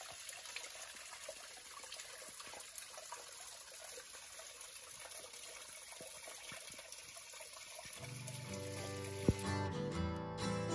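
Small waterfall trickling down a rock face into a shallow pool: a faint, steady splashing hiss. About eight seconds in, acoustic guitar music comes in over it.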